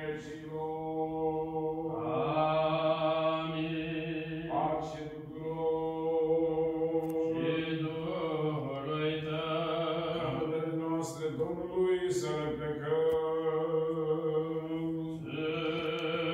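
Orthodox vespers chant: a voice sings a liturgical text in long held notes, the melody moving over a steady low pitch, with short breaks for breath every few seconds.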